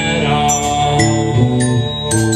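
Live indie rock band playing: bowed cello and electric guitars holding sustained notes, with high, ringing glockenspiel notes struck over them.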